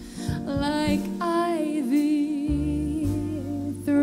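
Live jazz band playing: a woman's voice singing a wordless, wavering melody over piano, with double bass notes coming in about halfway through.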